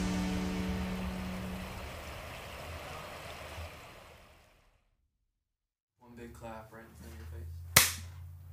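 Background music fading out to silence about halfway through. Then quiet room tone with a faint voice, and a single sharp hand clap near the end.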